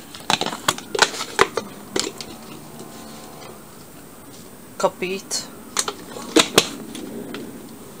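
Light clicks and taps from a spice container as sweet paprika is shaken onto raw chicken pieces in a stainless steel pan, in a cluster over the first two seconds and another about five to six and a half seconds in.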